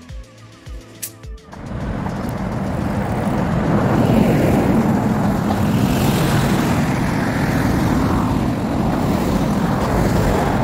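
Steady loud roar of street traffic outdoors, coming in about a second and a half in and holding, mostly low in pitch.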